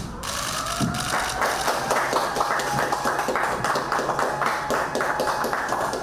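A small group of people clapping, starting about a second in. A faint rising tone leads into it, and a faint steady tone runs underneath.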